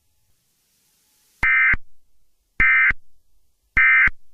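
Emergency Alert System end-of-message data bursts: three short, identical electronic bursts a little over a second apart. This is the SAME 'NNNN' code that marks the end of an EAS alert.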